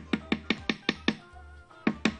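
A spoon knocking against the rim of a blender jar in quick, evenly spaced taps, about five a second, to shake off sticky chocolate spread. A short pause falls in the middle, then a second run of taps comes near the end. Background music plays underneath.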